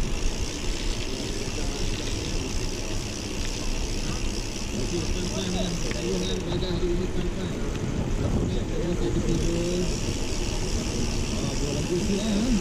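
Wind rushing over the camera microphone of a moving mountain bike, a steady loud rumble. Faint voices of other riders come through from about five to ten seconds in.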